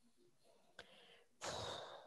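Near silence, then a person's short audible breath in the last half second, drawn just before speaking again.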